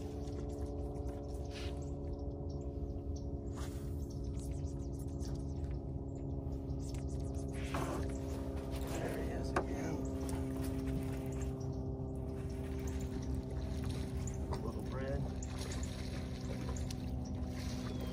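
A steady low hum runs under a fish being fought on rod and reel, with a few short splashes or clicks at the water.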